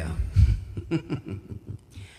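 A man's voice making short sounds without words, with a low thump about half a second in.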